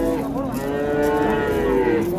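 A calf mooing in one long call that starts shortly after the beginning, its pitch arching slightly.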